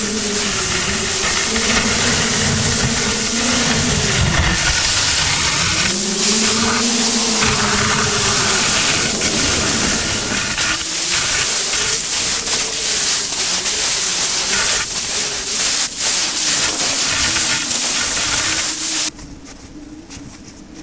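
Wind on the camera microphone: a loud, steady hiss with rumble underneath and a faint wavering low whistle. It cuts off abruptly near the end.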